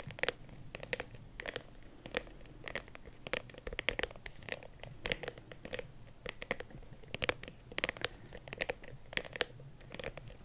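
Long fingernails tapping and scratching on a hard black Saint Laurent case: a quick, irregular run of light clicks and scratches, several a second.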